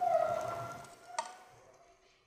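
A metal ring, as of the steel wick burner of an oil stove being knocked, fading over about a second and a half, with one sharp click just over a second in.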